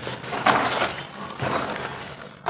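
Hands crumbling dry mud powder and squishing wet mud slurry into it: soft crumbling and squelching in a few short bursts, the clearest about half a second in.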